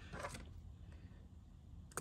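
Quiet room tone, with a brief faint sound in the first half-second.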